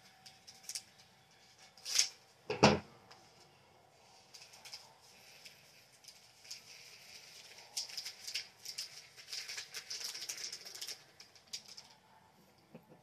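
Tiny plastic diamond-painting beads poured from a bag through a plastic funnel into a small bottle: a dense, rapid rattling patter through the second half. Earlier come a few sharp knocks, the loudest about two and a half seconds in.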